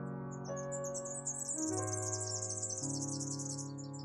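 Slow electric-piano music with held chords that change every second or so, and a high, fast chirping trill over it from about half a second in until the end.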